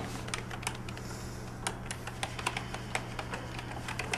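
Typing on a computer keyboard: irregular key clicks over a steady low hum.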